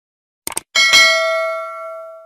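Two quick mouse clicks, then a notification-bell sound effect: a bright ding with several ringing tones that slowly dies away.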